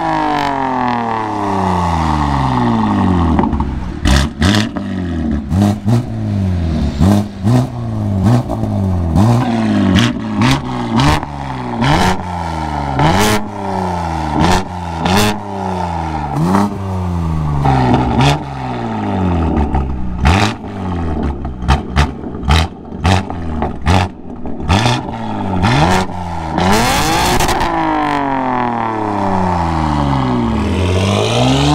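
BMW G80 M3's twin-turbo inline-six, fitted with an equal-length valved exhaust and free-flow downpipes, revving at a standstill. A long rev comes near the start, then quick throttle blips about once a second with sharp cracks between them, and another long rev near the end.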